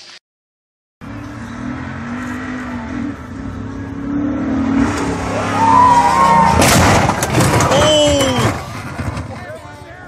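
Pickup truck engine running hard as the truck drives at a dirt jump, starting about a second in, followed by a loud crash near the middle as it lands heavily, with shouting.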